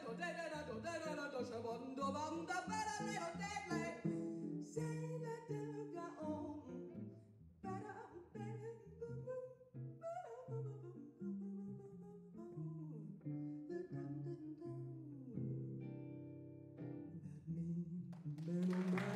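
Live small-group jazz led by guitar. A busy melodic line sounds over the guitar for the first few seconds, then the guitar plays sparse plucked notes and chords that ring out, settling on a held chord near the end.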